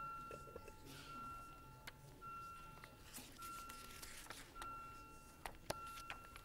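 The chamber's electronic voting system sounds a repeating beep while a recorded vote is open. It is one steady pitch held for most of a second and repeated about once a second, with scattered sharp clicks and knocks.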